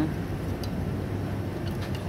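A few faint metallic clicks from a small pry bar levering at a disc brake caliper and pad, over a steady low hum.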